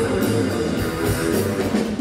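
A live blues band playing: two electric guitars over a drum kit.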